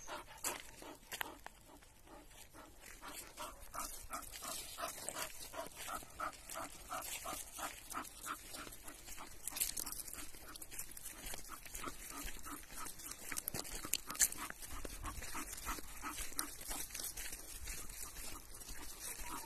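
Bull terrier panting steadily, about two or three breaths a second, as it trots on a lead. A few sharp clicks come near the end.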